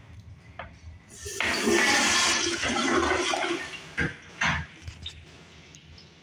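Toto commercial toilet with an exposed flush valve flushing: a loud rush of water starts about a second in, lasts about two and a half seconds and tails off, followed by two short knocks.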